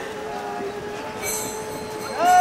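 Conch shell blown in one long, steady note over the chatter of a crowd.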